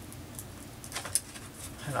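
A sheet-mask pouch crinkling in the hands as it is twisted and pulled in an unsuccessful attempt to tear it open, giving a few short, sharp crackles.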